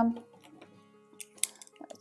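A few faint, light clicks a little past the middle, from a cutting tool and a pastel pencil being handled over a wooden dish, under faint steady background music.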